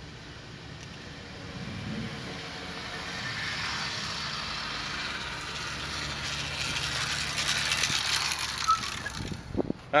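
Two-stroke motorized-bicycle engine kit, fitted with a reed valve, running as the bike rides toward the camera: a steady low hum under a hiss that grows gradually louder. A man's voice begins at the very end.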